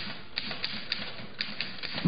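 Manual typewriter keys striking: a handful of sharp, irregular clacks, about six in two seconds.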